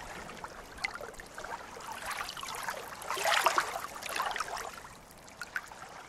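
Water splashing and trickling with small crackles, swelling for a second or two about three seconds in.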